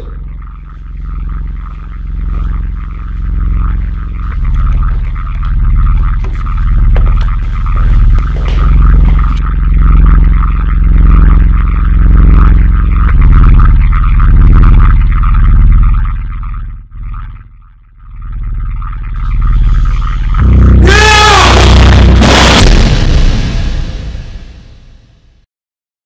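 Horror-trailer score: a low droning bed that swells and ebbs about once a second, growing louder, drops away briefly, then returns. Near the end comes a loud, harsh, wavering sting that cuts off and fades out.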